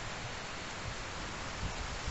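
Steady outdoor background hiss, with a faint low rumble underneath.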